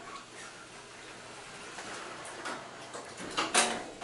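The sliding doors of a 1970s Otis hydraulic elevator car running closed, ending with a short thump as they shut near the end.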